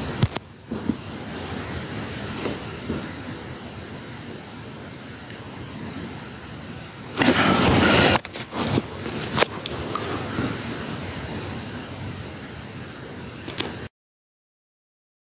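Handling noise on a phone's microphone: a steady hiss with scattered knocks and rustles, and a loud rush of noise lasting about a second, about seven seconds in.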